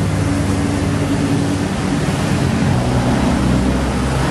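Street traffic noise with a nearby motor engine running steadily; its low hum shifts in pitch about two-thirds of the way in.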